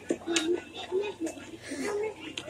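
Faint, broken-up voices with a few small clicks and rustles.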